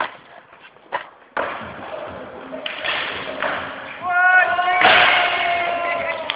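Two sharp clacks of a skateboard on concrete in the first second. Then a sudden steady rushing noise, and near the end a long held shout from a voice, echoing as in a large hall.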